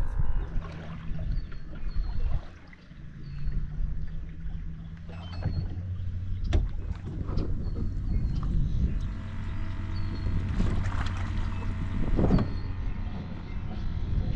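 Electric trolling motor running as the boat is steered, a steady low hum that drops in pitch and settles about five seconds in, with a few scattered knocks.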